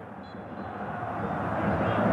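Stadium crowd noise swelling steadily louder as a shot goes toward goal and past the post.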